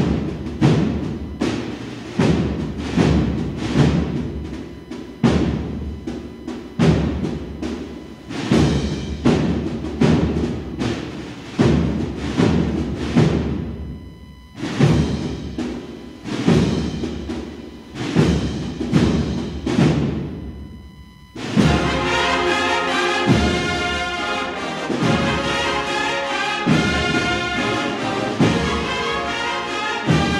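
Andalusian processional band (agrupación musical) playing a processional march: for the first twenty seconds the drums beat out a slow, regular rhythm of about one stroke a second, dropping away briefly twice. About twenty-one seconds in, the whole band enters, brass and drums together, in sustained full chords.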